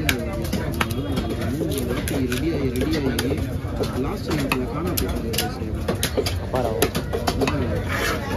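A large knife scraping scales off a red snapper and striking the wooden chopping block: a quick, irregular string of sharp scrapes and clicks.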